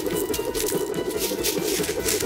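Cartoon scramble sound effect: a fast, dense, even rattling that goes on steadily, over light background music.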